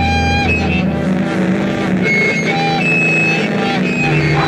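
Distorted electric guitar making noise and sustained feedback: held high tones that shift in pitch, over a dense low rumble of ringing strings.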